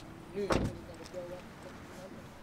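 A car door slammed shut once, about half a second in: a single heavy thump.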